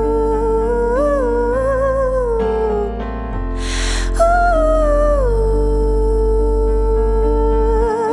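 A woman's wordless sung vocal over sustained electric keyboard and synthesizer chords with a low bass: held notes with vibrato, a slide downward before a breath about halfway through, then a higher note that falls back and is held with vibrato.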